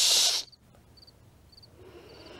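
A person's sharp hushing 'sss' hiss, about half a second long, cutting off abruptly. After it comes quiet room tone with faint high chirps repeating every few tenths of a second.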